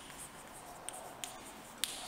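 Chalk on a blackboard while writing: a few short, sharp clicks from the chalk striking and lifting off the board, the last near the end the loudest, over faint scratching.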